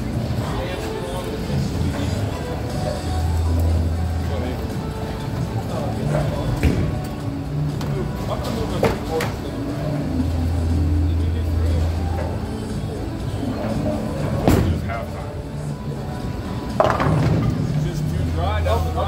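Bowling alley din: background music and indistinct chatter, broken by several sharp knocks spread through it.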